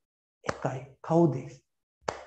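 A man's voice in two short spoken bursts after a moment of dead silence, the first opening with a sharp click.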